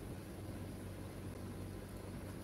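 Steady background hiss with a low, constant hum underneath; no distinct event.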